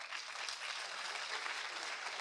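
Audience applauding, a soft, steady patter of many hands clapping.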